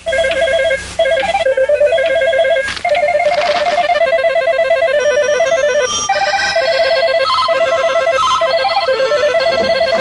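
Several electronic telephone ringers warbling at once, rapid trills at different pitches overlapping in short rings, with higher-pitched ones joining about six seconds in.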